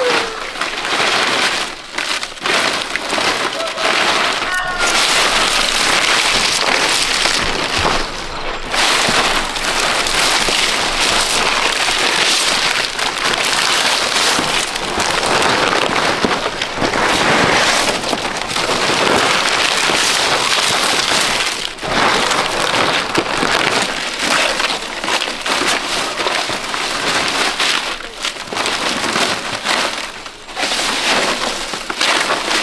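Palm fronds rustling and crackling as they are handled and pressed onto a bamboo roof frame as thatch: a dense, continuous rustle full of small crisp snaps.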